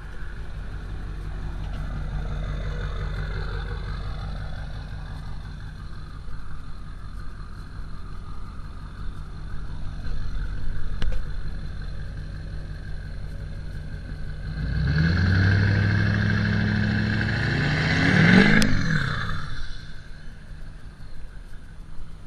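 Pickup truck engine idling steadily, then revving up about fifteen seconds in as the truck pulls away, rising in pitch for some four seconds before dropping off.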